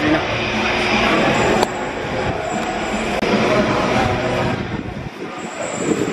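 A weighted push sled scraping and rumbling along artificial turf as it is driven forward, with music playing in the background.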